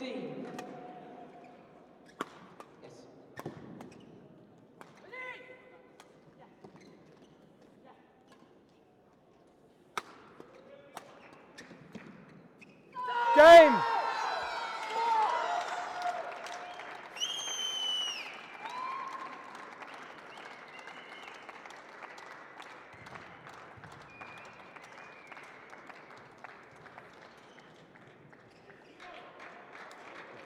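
Badminton doubles rally with sharp racket strikes on the shuttlecock and shoe squeaks on the court floor. About 13 s in, the winning point sets off loud shouts of celebration from the players, followed by crowd cheering and applause.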